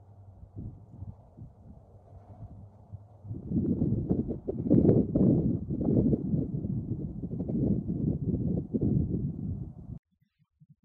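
Wind buffeting the microphone: loud, irregular gusts begin about three seconds in and cut off suddenly at the end. Before the gusts there is a faint, steady low drone, fitting the distant C-130 turboprop engines.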